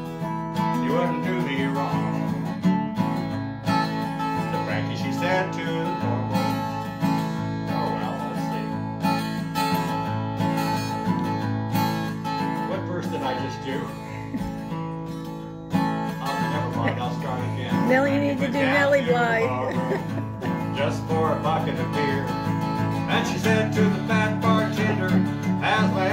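Acoustic guitar strummed as song accompaniment, with a man's voice singing over it in places.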